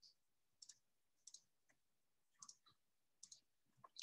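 Faint computer mouse clicks, several short press-and-release pairs spaced about a second apart, over near silence.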